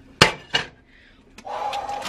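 Cookware being knocked in the kitchen: one sharp clack, a softer knock about a third of a second later, then a faint click.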